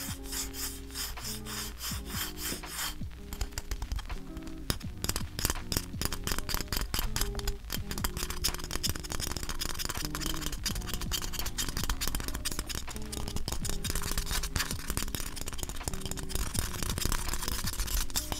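Fingers rubbing, scraping and tapping keycaps in their foam-lined box: a dense run of small clicks and a scratchy rustle. Lo-fi music plays underneath.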